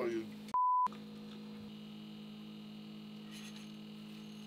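A short, single-pitch censor bleep about half a second in, lasting about a third of a second and replacing a spoken word. Around it there is a steady low hum.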